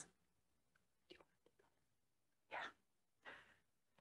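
Near silence, broken by three faint, brief whispers or breaths spread across the few seconds.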